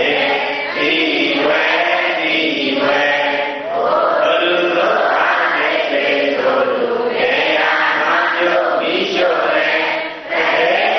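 Congregation of Buddhist lay devotees chanting together in unison, many voices holding long, steady phrases with brief breaks between them.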